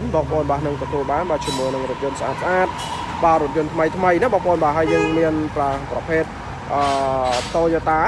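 A person talking continuously over a steady low hum.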